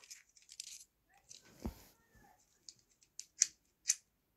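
Faint handling noise from a phone being moved about: light rustling, a soft thump a little under two seconds in, and a few sharp clicks near the end.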